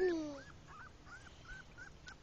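Four-week-old English Pointer puppy whimpering: a run of short, faint, high squeaks, about four a second.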